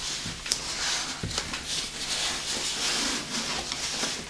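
Fabric rustling and rubbing as a sewn cloth dress is pulled up over a large doll's legs and hips, with a couple of light knocks.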